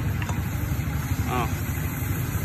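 An engine idling steadily, a low pulsing rumble.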